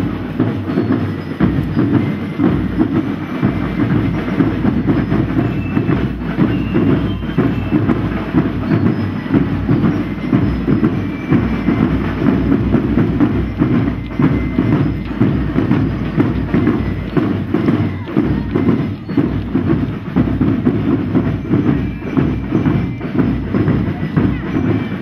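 Drums of a school parade band beating a fast, dense, unbroken marching rhythm.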